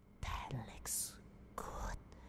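A voice whispering a short phrase in three breathy bursts, with a sharp hissed sound about a second in.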